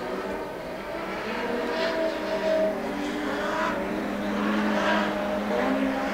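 Several production sedan race cars' engines running hard on the track, their engine notes rising and falling as the cars go round, growing gradually louder toward the end.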